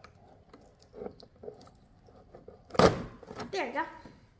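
Scissors cutting packing tape on a cardboard box, faint snips and small knocks against the cardboard. About three seconds in, a short loud burst of a person's voice.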